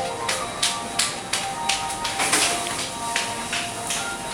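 Shop background music with steady held notes, over a run of short hissy scuffs, two or three a second.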